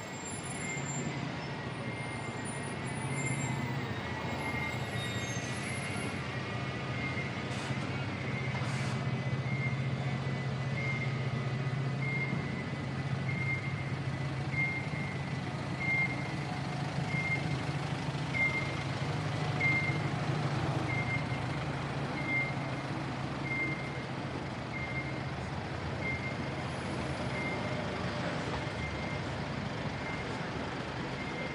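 A vehicle's reversing alarm beeping steadily, about once a second, over the low rumble of idling engines in street traffic.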